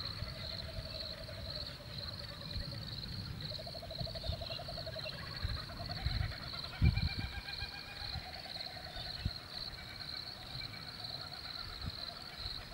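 Crickets chirping steadily in a fast, even pulse throughout. A lower pulsing animal call rises over it several times, each call lasting one to two seconds. A few short low thumps stand out, the loudest about seven seconds in.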